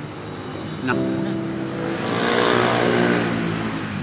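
A motor vehicle passing on the road: its engine note and tyre noise come in about a second in, grow loudest near the three-second mark, then ease off.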